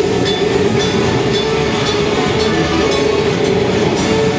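Live heavy metal band playing loud: distorted guitar and bass in a dense wall of sound, with drums and regularly repeating cymbal hits.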